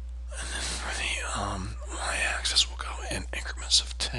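A man talking under his breath in a near-whisper, with a couple of sharp hissed 's' sounds, over a steady low electrical hum.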